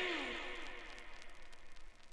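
A record's music winding down as the vinyl on a turntable is stopped, its pitch sliding down and fading away over the first second or so, leaving a faint tail.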